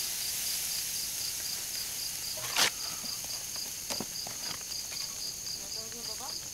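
Crickets chirping in a steady, evenly pulsed high rhythm, with a second continuous high trill above it. A single sharp crack stands out about two and a half seconds in, and a lighter click comes near four seconds.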